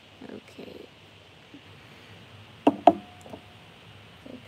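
Two sharp knocks of a hard object, about a fifth of a second apart, with a brief ringing tone after the second.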